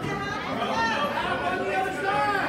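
Overlapping voices of several people talking and calling out at once, a steady hubbub of chatter with no single clear speaker.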